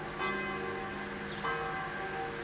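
A large bell ringing, struck twice about a second and a quarter apart. Each stroke leaves a long ringing hum of several steady tones.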